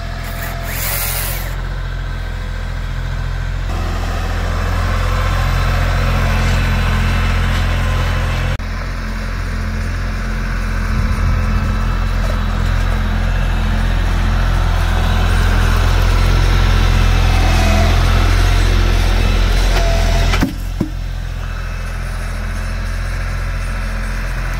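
Compact tractor's engine running steadily while it carries a log in its front grapple. The engine note shifts a couple of times and drops briefly about 20 seconds in.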